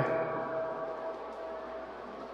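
Steady background noise in a pause of a man's recorded speech: a faint hiss with a constant thin tone running under it, just after his last word trails off at the very start.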